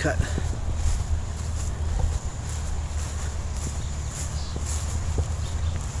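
Steady wind rumbling on the microphone, with a continuous high-pitched insect buzz and a few faint ticks behind it.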